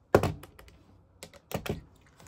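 A sharp plastic click, then a few lighter clicks and taps about a second later, from cash envelopes and a clear acrylic box being handled on a desk.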